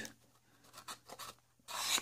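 Hands rubbing and sliding over a coin presentation box on a cloth-covered table: soft scattered rustles, then a louder scraping rub near the end.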